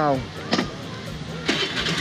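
A vehicle engine idling steadily, a low hum, with a short burst of hiss near the end.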